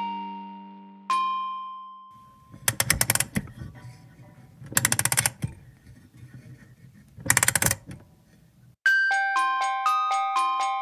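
A single bell-like chime rings out and fades about a second in, then three short bursts of rapid clicking over a low rumble, like a music box's clockwork being wound. Near the end the music box starts playing its tune in high, plucked comb notes.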